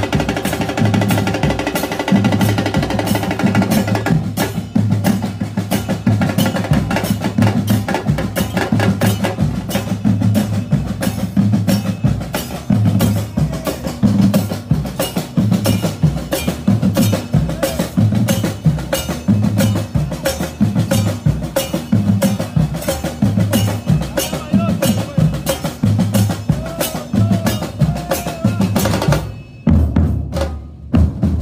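A fan-club drum section of large bass drums (bombos) and snare drums playing a fast, loud, driving rhythm together. For the first four seconds a sustained pitched sound rings over the drums. The drumming breaks off about a second before the end.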